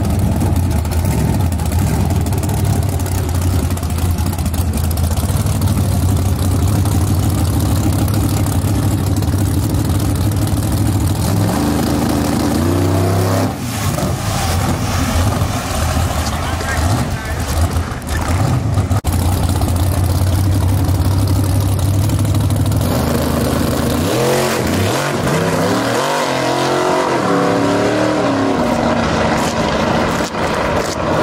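Fox-body Ford Mustang drag car's engine running loud and steady at the starting line, then rising sharply about twelve seconds in as it launches. Later it pulls away with a series of rising and falling sweeps through the gears.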